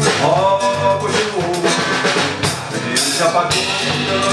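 Acoustic guitar and electric bass playing a song live, a steady strummed accompaniment over a bass line, with some singing.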